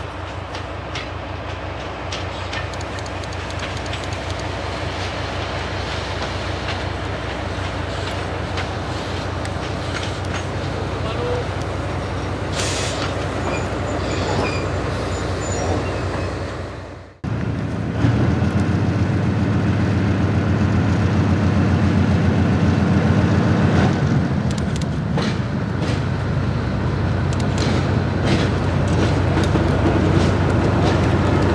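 A narrow-gauge diesel locomotive hauling passenger coaches past, its engine running over the clatter of wheels on the rails. After an abrupt cut about halfway through, a diesel locomotive's engine runs louder and closer, with a deep steady hum.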